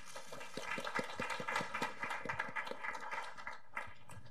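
Audience applause: a dense patter of hand claps that begins about half a second in and dies away just before the end.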